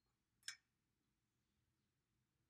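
Near silence: room tone, broken by one brief click about half a second in.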